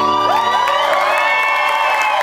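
Audience cheering and whooping with many overlapping high cries as an acoustic guitar song ends, the last low guitar notes dying away in the first half second.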